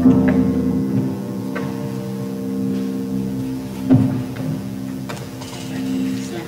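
Grand piano playing slow, sustained chords, with new chords struck a few times and left to ring.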